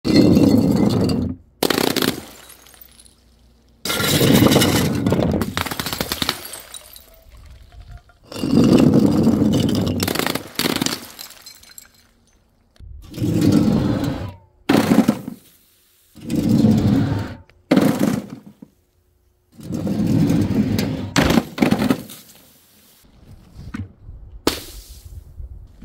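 A run of glass bottles crashing and shattering and of liquid-filled balloons bursting with a splash on paving tiles: about eight loud crashes, each starting suddenly and lasting a second or two, with short quiet gaps between.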